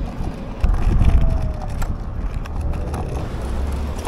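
Riding a scooter over pavement: a low rumble of wheels and wind on the handlebar-mounted microphone, stronger from about half a second in, with a faint whine and a few light clicks and rattles.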